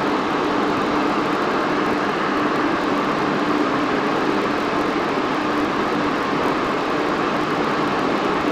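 Steady background noise with a faint low hum underneath, even and unchanging, with no speech.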